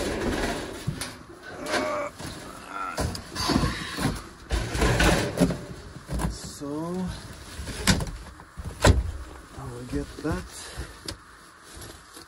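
Irregular knocks and bumps of a portable propane heater, a metal cabinet holding a gas bottle, being carried out through a doorway and set down.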